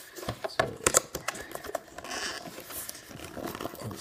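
Fingers working at the flap of a cardboard collector box that is hard to open: a run of light clicks and taps, with a brief scratchy rasp of cardboard about two seconds in.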